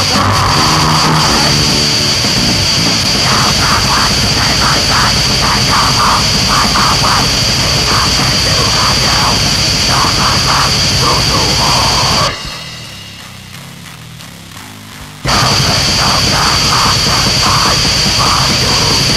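Loud, aggressive heavy metal music with a pounding rhythm. About twelve seconds in it suddenly drops to a much quieter passage for about three seconds, then the full band comes back in.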